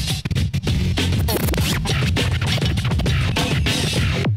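Turntablist scratching vinyl on Technics turntables: the record is pushed and pulled under the hand while fast crossfader cuts chop it into short bursts, with sweeping pitch glides, all over a heavy bass beat.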